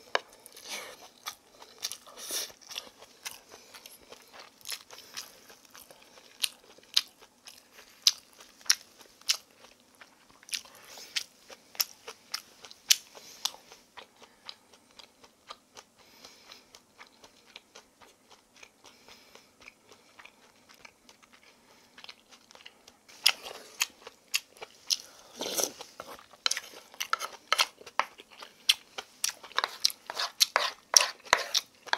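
Close-miked chewing of a mouthful of namul bibimbap (rice mixed with seasoned vegetables), with many small, sharp wet clicks and crunches, sparser through the middle. Near the end, a wooden spoon is heard working the rice in a wooden bowl among denser clicks.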